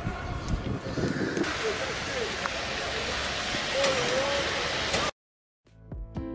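Outdoor ambience: a steady rushing background with scattered distant voices calling out. It cuts off abruptly about five seconds in, and guitar music starts just before the end.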